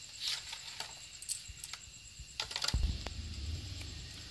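Scattered light metallic clicks and taps of bolts and a hand tool going into a Kawasaki KLX 150's magneto cover, the strongest a little past halfway, with a low hum in the second half.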